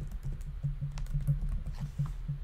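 Typing on a computer keyboard: a quick run of keystrokes as a word is typed.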